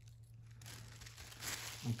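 Faint crinkling of a small bag of salt being handled and set aside, with a brief louder rustle about one and a half seconds in.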